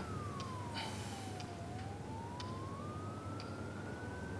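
A faint, distant siren-like wail: one pure tone sliding down in pitch, then slowly climbing back up, over a low steady hum. A few faint ticks fall in between.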